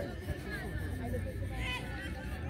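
Faint voices calling and chattering from players and people along the touchline, over a steady low rumble.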